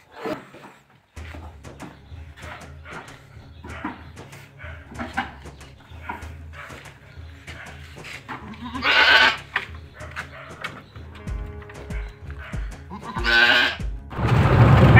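Boer goat bleating loudly twice, about nine seconds in and again near the end, over background music.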